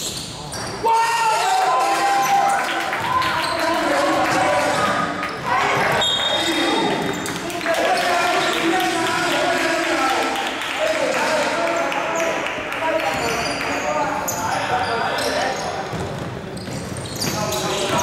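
Basketball being dribbled and bounced on a gym court while players and the bench call out, in the reverberant space of a large indoor hall.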